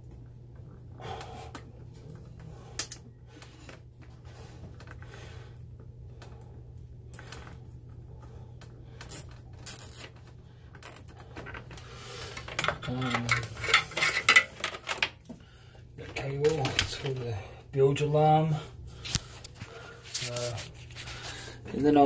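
Hands handling and rubbing electrical cables, with scattered small clicks and taps, over a steady low hum. A few muffled vocal sounds come in the second half.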